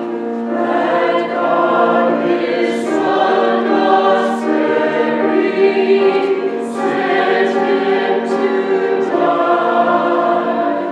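Mixed choir of men's and women's voices singing in harmony, holding sustained chords that shift every second or so, with sharp 's' consonants cutting through several times.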